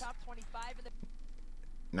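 Faint voice in the background for about the first second, then a quiet stretch, with a low steady hum underneath.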